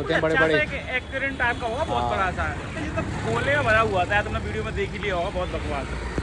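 Men talking, with steady road-traffic noise underneath.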